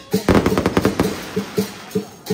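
Chinese dragon-dance percussion: a drum beating at a quick rhythm. Near the start the beat is broken by a dense run of rapid, sharp cracks lasting just under a second.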